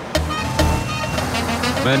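A car driving, a steady engine and road rumble, under background music.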